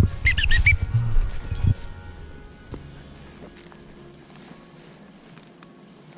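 Footsteps through dry field grass with low rumbling on the microphone, and a quick run of high chirps about half a second in. After about two seconds it drops to a faint outdoor hush.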